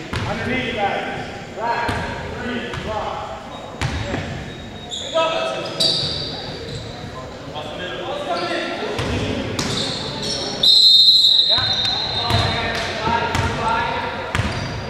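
A basketball bouncing on a hardwood gym floor, several separate thuds echoing in the hall. About eleven seconds in, a referee's whistle blast, held for just under a second, is the loudest sound.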